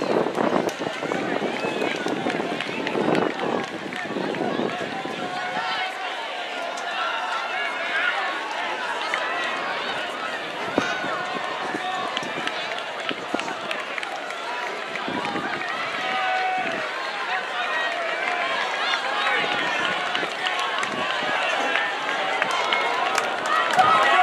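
Spectators along the track shouting and cheering on passing runners, many voices overlapping without clear words.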